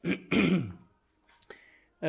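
A man clears his throat with a short cough, running into a drawn-out 'uh' that falls in pitch. A faint click follows about a second and a half in.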